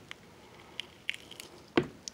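A few soft, wet squishes and clicks of a rambutan's hairy rind being squeezed and split open by hand, with a louder squelch near the end.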